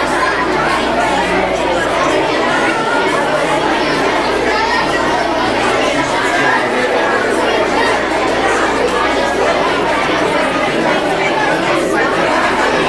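Crowd chatter of children and adults, many voices talking at once in a large gymnasium hall, steady throughout with no single voice standing out.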